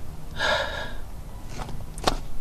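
A woman crying, with a loud gasping breath about half a second in and a short sharp intake of breath near the end.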